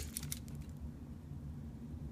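A few faint clicks from a pinpointer and its plastic holder and cord being handled, over a low steady room hum.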